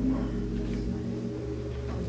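Sustained keyboard chords held steady, with a chord change about a second in, as an introduction to a song.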